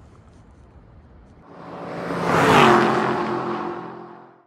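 Outro logo sting sound effect: a whoosh that swells up from about a second and a half in, peaks, and settles into a held low pitched hum that fades out.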